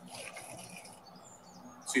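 A short, faint bird chirp a little after a second in, over a soft outdoor hiss that fades out during the first second.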